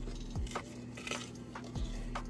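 Light clinks and scrapes of a metal spoon against a stainless steel pot as simmering oil is stirred, a few short clicks about half a second apart, over faint background music with a steady low tone.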